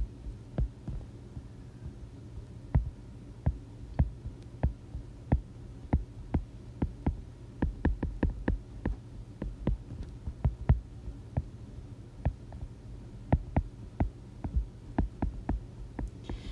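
A stylus tip ticking and tapping on a tablet's glass screen during handwriting: irregular sharp clicks, several a second, over a steady low hum.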